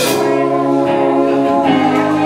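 Live rock band music: the drums drop out after a hit at the very start, leaving electric guitars and bass holding sustained chords.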